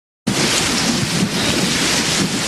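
Loud, steady rushing noise with a low rumble underneath, like strong wind or rushing water, cutting in suddenly just after the start.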